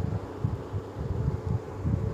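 Low, steady background hum of room noise.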